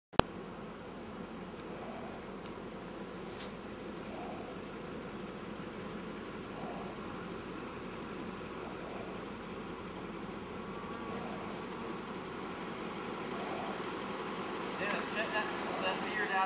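Honeybees buzzing in a steady hum around a yard of hives. A sharp click comes right at the start, and higher-pitched chirps join near the end.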